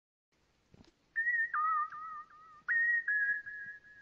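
Whistling: steady high notes start about a second in, often two pitches at once, in several held notes with short breaks, the last one a little lower and quieter.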